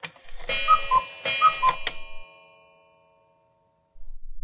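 Short transition sound effect of clock-like ticks and chiming notes: two falling two-note figures over a few ticks, whose notes ring on and fade out just past halfway.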